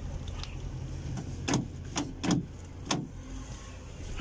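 A run of sharp clicks from a van sliding door's plastic inside handle being worked, over a low steady hum; with the child lock on, the latch does not release.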